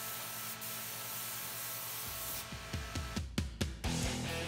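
RichPen airbrush spraying paint with a steady hiss that stops about two and a half seconds in. Backing music with drum hits takes over near the end.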